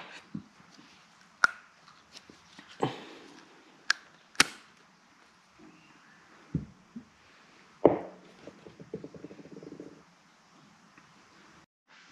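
Small plastic and metal parts of a power-steering idle-up valve handled and fitted together by hand, giving scattered light clicks and taps, with a short scraping rattle about eight seconds in.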